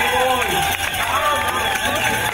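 A crowd of spectators, many voices talking and calling out over one another, as a pack of road-racing cyclists rolls past.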